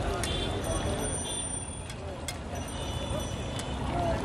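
Metal spatula scraping and tapping on a large flat iron griddle, a few sharp clicks over a steady rumble of street noise and background voices.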